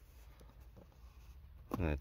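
Faint scratchy rustling as a hand handles a foam mat against quilt bedding, followed by a man's voice near the end.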